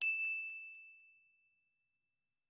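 A single bright bell-like ding sound effect, struck once and ringing out as one clear high tone that fades away over about a second.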